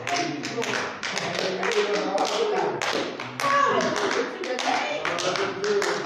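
Hands clapping quickly and steadily, about five or six claps a second, over several people's voices.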